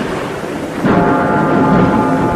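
A loud rumble of thunder laid on as a sound effect, dying down, then background music with held tones coming in about a second in.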